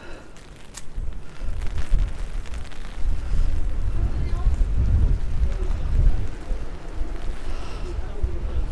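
Wind buffeting the microphone in uneven low rumbling gusts, starting about a second in and heaviest in the middle.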